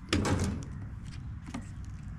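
Hands working the rubber spark plug boot and its wire on a backpack blower engine: a brief rubbing scrape at the start, then low handling noise with a few faint clicks.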